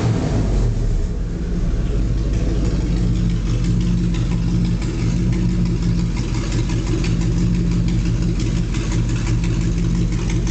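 Triumph Stag's original 3.0 V8 running on just its two exhaust downpipes, with no silencers fitted. The revs die away in the first second and it then idles steadily.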